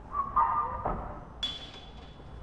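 A short unexplained noise: a brief wavering tone, a knock just before the one-second mark, then a sudden sharp hit that rings on thinly.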